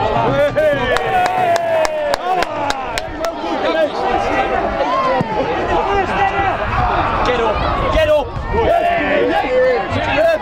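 A football crowd shouting and chanting, many voices overlapping throughout, with scattered sharp clicks in the first few seconds.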